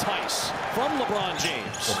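A basketball bouncing on a hardwood court during game play, two sharp knocks about two seconds apart, under a broadcast commentator's voice.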